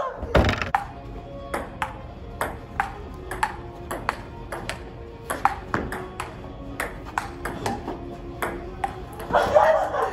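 Table tennis rally: the ball clicking off paddles and the table in a quick, even run, about two to three hits a second.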